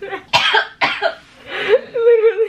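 A woman laughing hard: two sharp, breathy, cough-like bursts of laughter in the first second, then a voiced laughing sound near the end.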